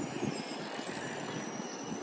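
A tram moving off along the street, heard as a steady, fairly quiet rolling hiss with little low rumble left.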